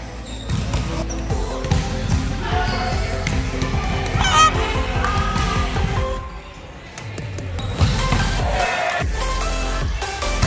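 Indoor volleyball game: ball contacts and thuds on the gym floor, with a few short high squeaks from sneakers on the court. Instrumental background music with a beat runs underneath.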